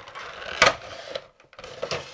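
A cardboard Funko Pop box and its clear plastic insert being handled as the vinyl figure is slid out, rustling and clicking. There is a sharp knock about half a second in and a lighter click near the end.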